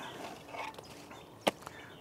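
Shovel working into garden soil with quiet scraping, and one sharp click about one and a half seconds in.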